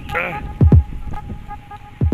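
Two dull low thumps, about a second and a half apart, from a handheld phone being carried while walking, over a faint steady tone. A short vocal sound comes near the start.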